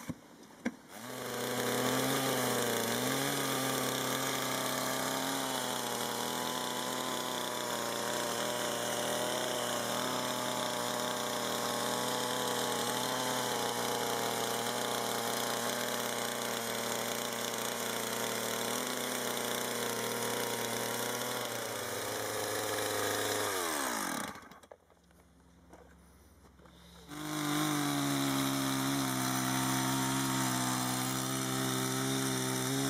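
Two-stroke petrol chainsaw starting about a second in and running steadily. About 24 s in it stops, its pitch falling away. After a short quiet it starts again and runs on.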